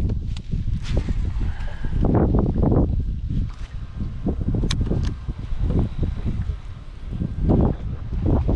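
Wind buffeting the microphone in uneven low gusts on an open boat, with one sharp click about halfway through.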